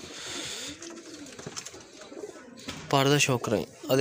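Domestic pigeons cooing softly in low, rounded calls for the first couple of seconds, followed by a man talking.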